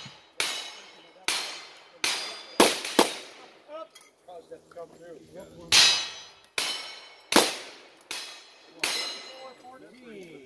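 A string of gunshots at steel targets. Five come quickly in the first three seconds, a little under a second apart, and after a short break four more follow, with a ring trailing several of them.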